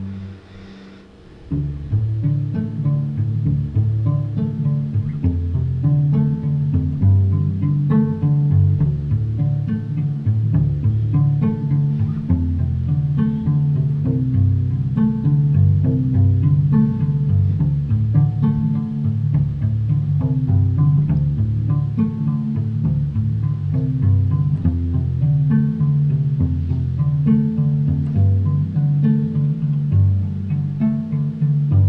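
Solo carbon-fibre cello: after a brief lull about a second in, a steady rhythmic pizzicato pattern of low plucked notes.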